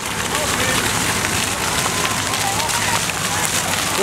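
Splash-pad fountain jets spraying up from the pavement and spattering back down onto the wet paving, a steady hiss of falling water.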